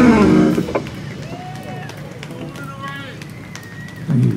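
A rock band with electric guitars and drums ends a song on a chord whose pitch slides down and stops about half a second in. Faint voices follow.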